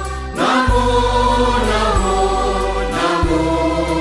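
Choral music: several voices holding long sung notes over a steady low accompaniment, the chords changing every second or so.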